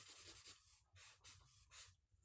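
Felt-tip marker scribbling on paper, a run of quick, faint strokes shading in a small shape.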